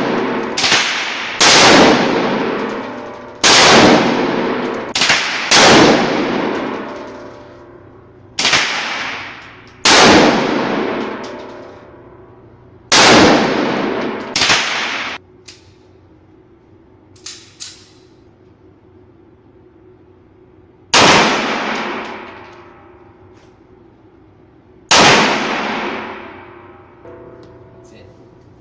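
5.56 rifle firing about eleven single shots at an uneven, deliberate pace, a second to several seconds apart, each shot echoing in an indoor range.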